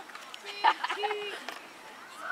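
Speech: people talking briefly, a short word called out about a second in.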